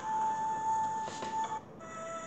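Sound effect from an animated children's storybook app: a single steady high tone held over a breathy, airy hiss while ghostly wisps fly off the screen. It cuts off about one and a half seconds in.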